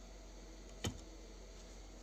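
A single sharp click a little before the middle, over a faint steady low hum, from the homemade magnetic torque generator's magnet mechanism as it cycles through firing and resetting by itself.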